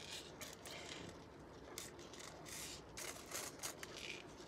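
Faint, irregular scraping and rustling as jewelry and things on a tabletop are handled and moved, in short uneven strokes with brief gaps between them.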